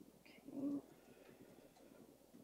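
A single short spoken "okay" about half a second in, otherwise quiet room tone.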